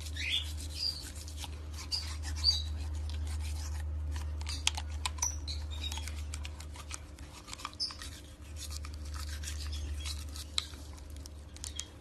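Toothbrush scrubbing a husky's teeth: scraping bristles with scattered sharp clicks, over a steady low hum.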